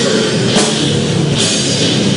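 A heavy metal band playing loud and live: two electric guitars, bass guitar and a drum kit together in one steady wall of sound.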